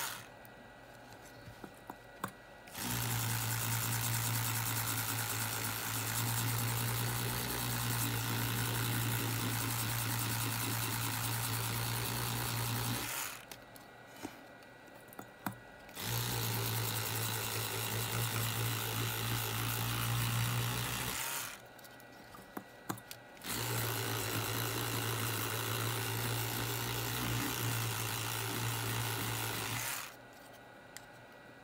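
Electric toothbrush running with a steady buzz as its head scrubs a circuit board clean. It starts about three seconds in and stops briefly twice, around 13 and 21 seconds.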